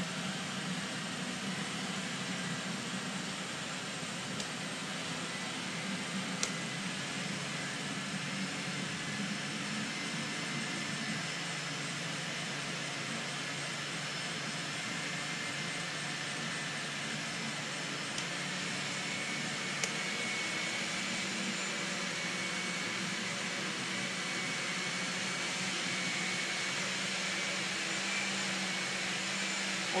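Three Osterizer kitchen blenders running together on the 'whip' setting, a steady motor whine, whipping water-and-coolant-additive mixtures into foam. A faint high whistle joins in about two-thirds of the way through.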